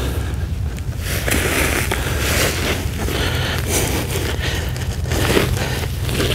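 Gloved hands scraping and pushing loose, dry soil into a planting hole around a young shrub's roots, an irregular gritty scratching and rustling, over a steady low rumble.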